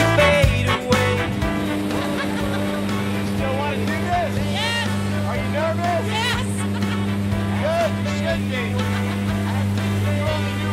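Steady low drone of a light aircraft's engine heard inside the cabin, with a few short voice sounds over it.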